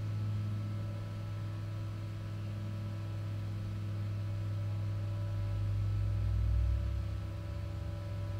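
A steady low hum with faint thin tones above it, growing a little louder and deeper around six to seven seconds in. No clear sound of pouring water stands out.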